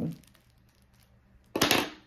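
Quiet room tone, broken about a second and a half in by one short, loud rasping handling noise lasting about a third of a second.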